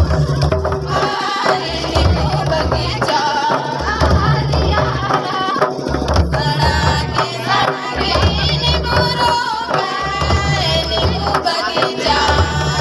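Two-headed barrel hand drums (mandar) beaten in a repeating folk-dance rhythm, with voices singing a melody over them.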